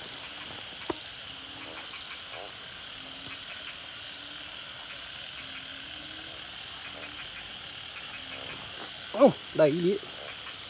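Narrow-mouthed frogs (Isan 'ueng') calling after rain: a handful of short, low croaks at irregular intervals over a steady high chorus of insects.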